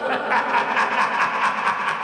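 A man's cackling laugh, a fast run of short, even pulses of voice.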